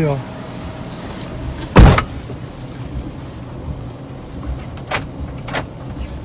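A Ram ProMaster-based camper van door slammed shut once, about two seconds in, hard enough to close it fully so the locks will engage. Two short sharp clicks follow near the end.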